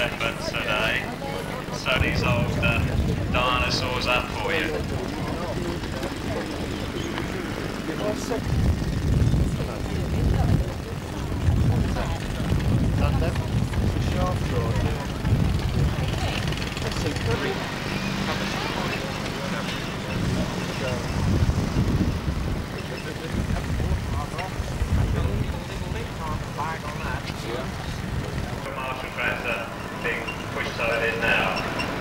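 Background voices of people talking at an outdoor show, with irregular low rumbling surges that come and go.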